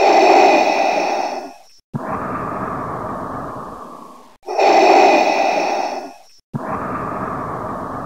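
Darth Vader respirator breathing sound effect: two slow breaths, each a hissing inhale of about two seconds followed by a longer exhale that fades away.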